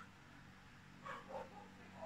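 Near silence: room tone with a faint low hum and a faint brief sound about a second in.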